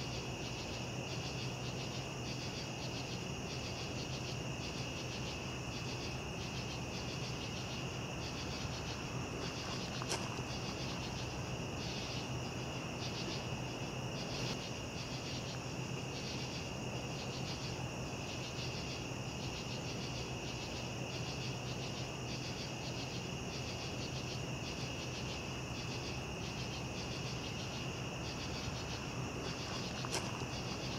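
Night insects calling in a continuous chorus: a steady high-pitched trill with a pulsing chirp about one and a half times a second above it, over a low steady hum.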